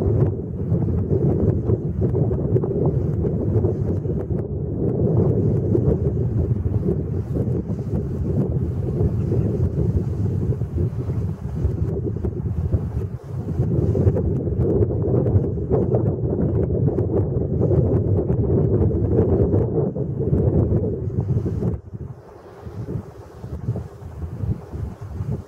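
Wind buffeting the microphone: a loud, steady low rumble that eases off sharply near the end.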